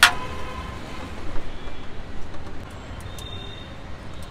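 A sharp metal clink of utensils against the biryani pot and serving tray rings briefly at the start. A lighter clink follows about a second and a half later, over a steady rumble of street traffic.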